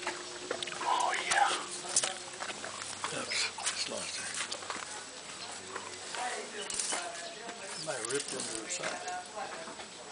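Indistinct voices of people talking, mostly too low to make out words.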